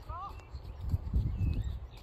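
Shire horse's hooves thudding dully and irregularly on the arena surface, loudest about a second in, with a few short high chirps in the background.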